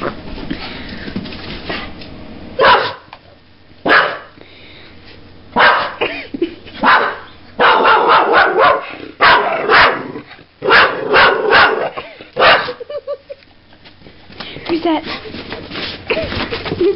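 Kelpie barking loudly in a series of short, sharp barks, starting a few seconds in and coming in quick runs through the middle, then stopping: alarm barking at a person it takes for an intruder.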